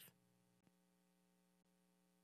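Near silence: a faint steady hum, with one tiny click just under a second in.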